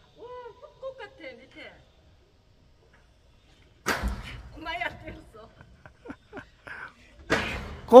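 A person jumping on a suspension footbridge's deck: one loud thud about four seconds in, followed by several lighter knocks, as the bridge is bounced hard enough to draw a warning that the cable will break.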